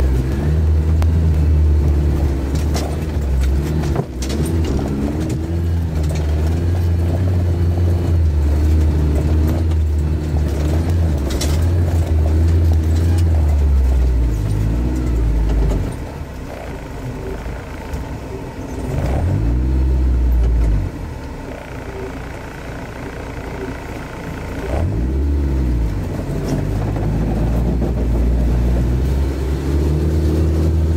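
An off-road 4x4's engine running steadily under load in low gear, heard from inside the cabin, with a few sharp knocks from the rough ground. In the second half the engine eases off twice, and each time the revs rise and fall again.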